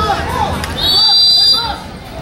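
Referee's whistle blown in one shrill blast of about a second, the loudest sound here, over voices and crowd noise.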